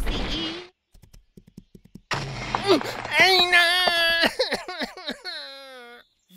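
Cartoon sound effects of a tumbling boulder: a rumble that stops about half a second in, a few faint ticks, then a sudden crash about two seconds in. The crash is followed by a wavering vocal cry that slides down in pitch, a character being hit by the falling rock.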